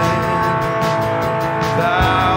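Live worship band music: a long held sung note over strummed acoustic guitar, with drums and cymbals.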